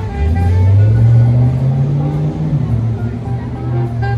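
A road vehicle's engine accelerating, its low hum rising in pitch for about two seconds and then levelling off, under background music.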